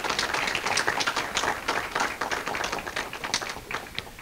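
Audience applauding: many hand claps together that thin out and die away near the end.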